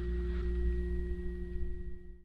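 Steady low room hum with faint, held pitched tones above it.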